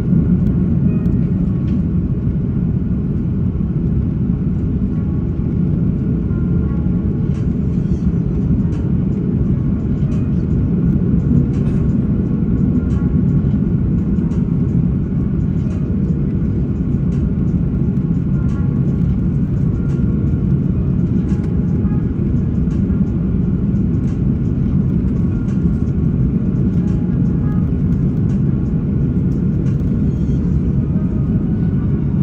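Steady low rumble of an Airbus A330's engines and rushing air, heard from inside the economy cabin over the wing on the approach to landing. Faint ticks come through now and then.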